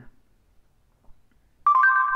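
Near silence, then, near the end, a loud steady two-note electronic beep from an Android phone's voice-assistant app, marking that it has stopped listening, just before its spoken reply.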